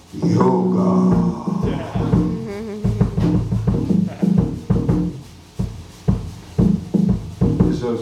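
A live band plays a jazz accompaniment: upright bass notes with drum-kit hits.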